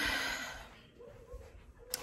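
A woman's breathy sigh, fading over about half a second, then a short quiet pause with a faint hum of voice before she speaks again.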